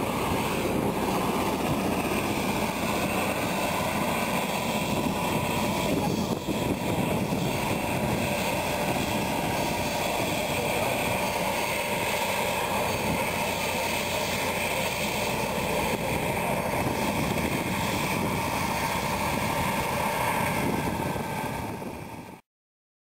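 Helicopter running with its rotor turning, a steady engine whine over the rotor noise that holds at an even level throughout.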